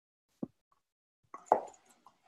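Silent call line with a single short soft pop a little under half a second in, then a brief vocal sound about one and a half seconds in, as a participant starts to make a noise into the microphone.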